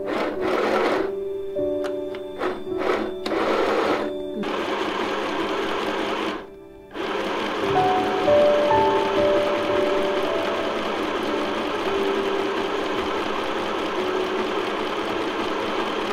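Mini electric sewing machine stitching through layers of cotton mask fabric. It runs in several short stop-start bursts for the first few seconds, dips briefly about six seconds in, then runs steadily, with soft background music over it.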